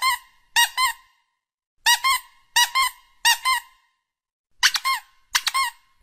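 Squeaky toy squeezed and released over and over: each squeeze gives a quick pair of high squeaks, repeated about seven times in short groups with brief pauses between.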